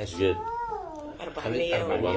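A single cat's meow, rising and then falling in pitch and lasting under a second, followed by a voice.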